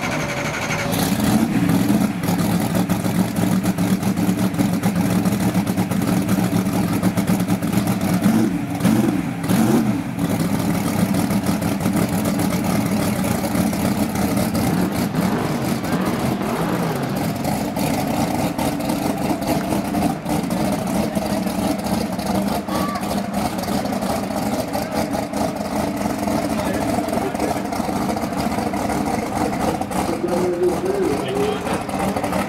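Fox-body Ford Mustang drag car's engine idling steadily, with a few short throttle blips about eight to ten seconds in.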